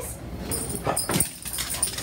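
A pug whimpering, with two knocks about a second in.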